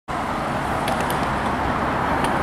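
Road traffic noise: a car driving past close by on the street, its tyre and engine noise a steady rush.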